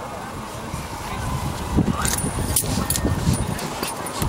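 Outdoor field ambience: wind rumbling on the camera's microphone, with faint distant voices of players calling. A few sharp handling knocks come about two to three seconds in.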